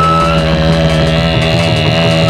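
Live dangdut band music through loudspeakers: held, slightly wavering melody notes over a sustained low note, with a fast drum rhythm underneath.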